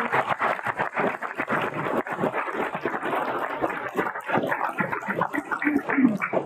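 People applauding, with dense, steady clapping.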